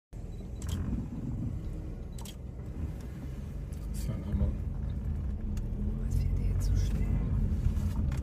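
Low, steady rumble of an idling or slowly creeping vehicle engine, heard from inside the vehicle, with a few brief sharp clicks.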